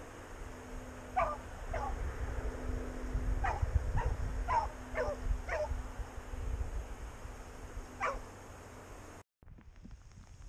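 Hunting hound yipping and whining eagerly in about seven short cries, each falling in pitch, over a steady low hum and rumble.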